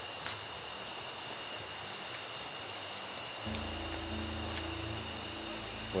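Night chorus of crickets, a steady high-pitched trilling. About three and a half seconds in, a low steady hum starts suddenly and runs alongside it.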